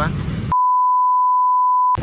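An edited-in beep: one steady single-pitch tone lasting about one and a half seconds, starting about half a second in and cutting off all other sound until it stops just before the end.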